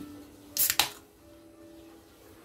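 Aluminium can of Snow lager opened by its pull tab: two sharp snaps about a quarter second apart, the crack of the seal breaking and the tab clicking.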